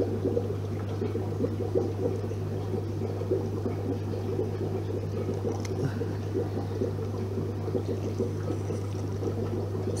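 Aquarium water bubbling and trickling, as from an air-driven sponge filter, over a steady low hum.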